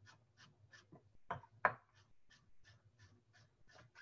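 Chef's knife slicing red onion thin on a wooden cutting board: a faint, steady run of knife taps about three to four a second, with two slightly louder knocks a little over a second in.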